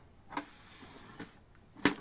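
Hands handling the opened scale's plastic housing and circuit board: a light knock about a third of a second in, a short rubbing sound, then a sharp click near the end, the loudest sound.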